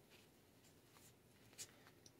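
Near silence with faint handling of a deck of oracle cards: soft rustling and one short card snap about one and a half seconds in.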